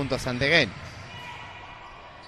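The end of a commentator's word, then faint steady background noise of an indoor basketball arena during play.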